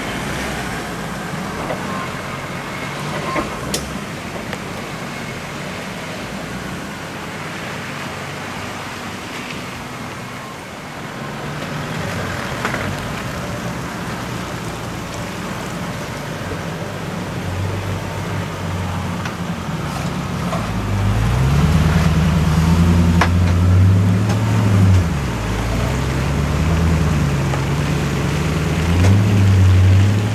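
Four-wheel-drive engines working up a rutted sandy track: a steady rumble of driving noise at first, then, for the last third, a close engine labouring and revving up and down under load.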